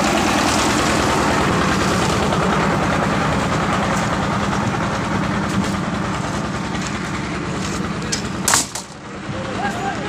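Single-cylinder diesel engine driving a concrete mixer, running steadily and loudly, fading slightly as it goes. A sharp clank comes near the end, and the engine noise then drops away under voices.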